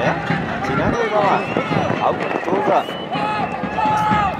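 Voices talking and calling out, several overlapping at once.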